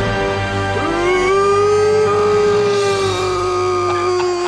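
A long held sung note over backing music, sliding up in pitch about a second in and then holding steady.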